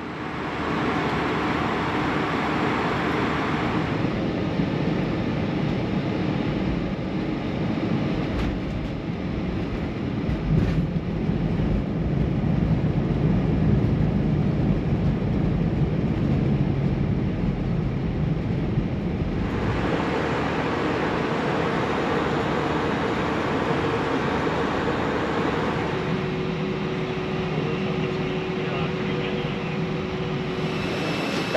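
Airbus A320 cabin noise through landing. A steady rush of airflow gives way, about ten seconds in, to a thump and a deep low rumble that swells as the jet slows on the runway. The rumble then eases into the lighter hum of taxiing, with a steady engine whine over the last few seconds.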